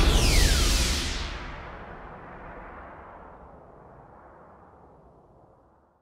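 The closing sound of a DJ's turntable mix: a loud hit with a falling swoosh in the first second, then a long echoing tail that fades away steadily over about five seconds.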